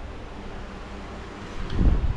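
Low rumble of wind noise on the camera microphone, swelling briefly near the end, over a steady faint background hiss.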